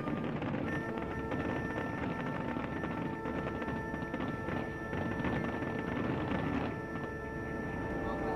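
Harbour fireworks show dying out, with crackling and crowd noise. From about a second in, a long steady pitched tone holds over them.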